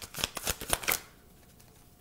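A tarot deck being shuffled by hand: a quick run of crisp card slaps, about four a second, that stops about a second in.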